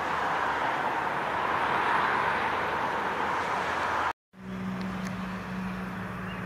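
A steady wash of outdoor background noise that cuts out suddenly about four seconds in. After the break comes a quieter, steady low hum.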